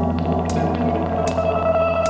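Live rock band music: a held low bass note under guitar, with a cymbal ticking about every three-quarters of a second.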